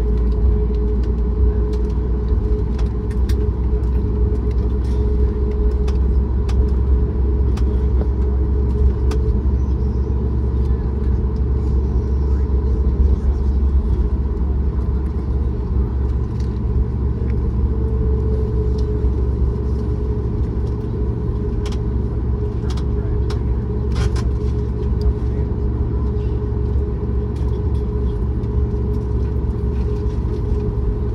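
Cabin noise of a Boeing 737 MAX 8 taxiing, heard from a window seat behind the wing: a steady low rumble from the CFM LEAP-1B engines at taxi idle, with a steady hum and occasional faint clicks and rattles.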